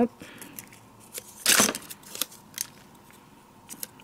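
Paper sentiment sticker being handled and peeled from its backing: one short rustle about a second and a half in, with a few light clicks and taps around it.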